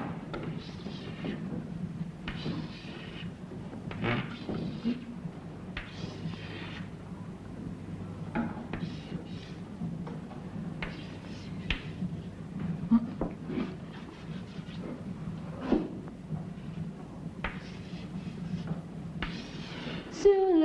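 Chalk scratching and tapping on a blackboard as numbers are written, in short strokes of about a second each with a few sharp ticks, over a steady low hum.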